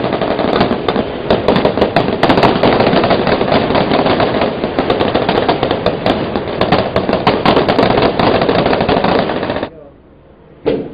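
Dense, rapid gunfire crackling without a break, cutting off abruptly near the end.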